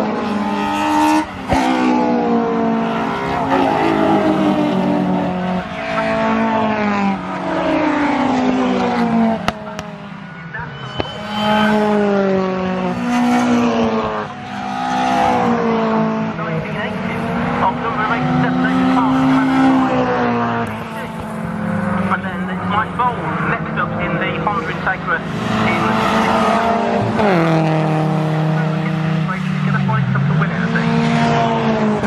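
Several racing hatchback engines revving hard through a corner, one after another, their pitch climbing and dropping with throttle and gear changes.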